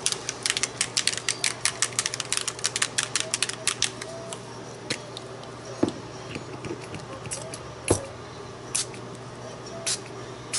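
A Heidi Swapp mica spray bottle is shaken in a fast rattle of clicks for the first few seconds. It then gives a few single spritzes near the end, which spatter navy mica onto paper tags.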